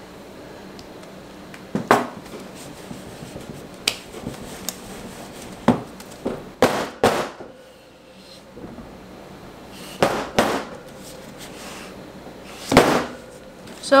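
Sharp knocks as a wooden loaf soap mold full of fresh soap is tapped down against a stainless steel worktable to settle the batter. There are about nine irregular knocks, some in quick pairs, with the loudest near the end.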